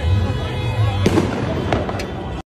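Fireworks going off: two sharp bangs, one about a second in and another just over half a second later, over a steady din of crowd noise and shouting voices.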